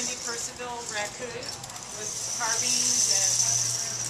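A rainstick tipped on end, its fill trickling down through the inside of the tube as a soft hiss that swells through the second half.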